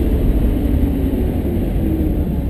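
Lamborghini Gallardo's V10 engine running through a right-hand turn after braking, heard from inside the cabin, with a slight rise in pitch near the end.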